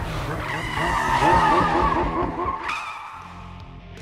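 Film chase-scene soundtrack: a motorcycle engine revving and tyres skidding, with music underneath. It is loudest in the first half and fades away near the end.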